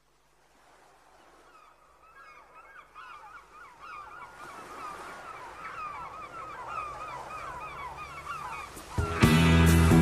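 A flock of birds calling, fading in from silence and growing steadily louder. About nine seconds in, the band comes in loudly with guitar and bass.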